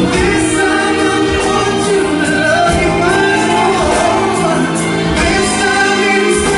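Live band music with a male voice singing over it, steady and loud.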